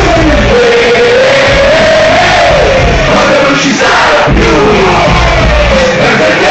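Live Italian hip hop concert picked up very loud on a phone's microphone: a bass-heavy beat with a wavering sung line over it and a crowd shouting along.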